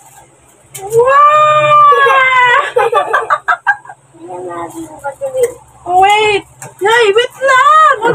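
Excited, high-pitched wordless vocal squeals and exclamations, with long swooping rises and falls in pitch. They start about a second in and come in several bursts.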